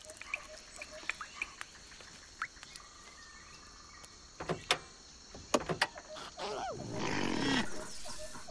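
Cartoon sound effects: scattered clicks and short squeaks, then near the end a longer animal call that bends down in pitch over a rushing noise.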